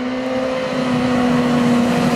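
BMW S1000R motorcycle's inline-four engine running at a steady high note under constant throttle, growing louder as the bike approaches.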